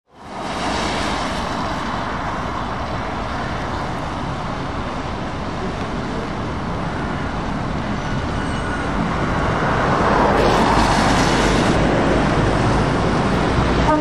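Heavy trucks driving slowly past on a wet road: a steady mix of engine running and tyre hiss that fades in at the start and grows louder about ten seconds in as a truck draws close.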